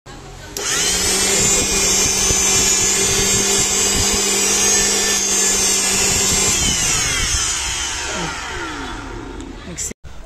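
Preethi mixer grinder motor run with no jar on. It spins up about half a second in to a steady high whine, then is switched off about six and a half seconds in and winds down with a falling whine. The running noise is the fault the owner sets out to cure by replacing the motor's 608 ball bearing.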